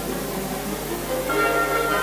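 Symphony orchestra playing held chords, with a fuller chord coming in near the end.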